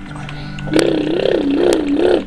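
A young girl's voice close to the camera microphone, making a loud, drawn-out silly vocal sound whose pitch wavers up and down, starting about a second in.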